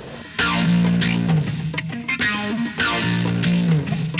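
Rickenbacker 12-string electric guitar, a 1967 model, strumming chords. A chord struck about half a second in rings on, and the strumming starts again a little after two seconds.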